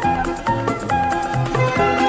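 Lively small-band music with hand drums, guitar and double bass: a held high melody over low bass notes and a steady drum beat.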